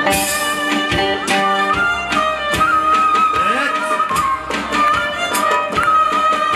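Live Turkish folk band playing an instrumental passage: a violin melody over plucked long-necked lutes and guitar, with hand-drum strikes.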